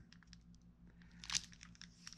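Plastic wrapping on a block of modelling clay crinkling faintly as the block is handled. There are a few small crackles and one louder rustle about a second and a half in.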